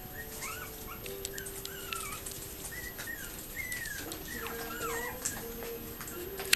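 Yorkiepoo puppy whimpering in a string of short, high, wavering squeaks, with a few light clicks and faint steady background tones underneath.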